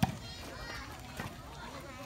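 A volleyball struck hard by hand at the very start, a single sharp slap, with a fainter hit about a second later. Scattered voices of players and spectators run underneath.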